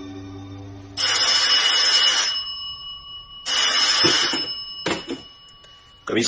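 Telephone bell ringing twice, each ring a little over a second long, then a few short clicks as the receiver is picked up.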